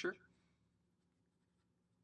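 Very faint scratching of a felt-tip marker writing on paper, over a low steady hum.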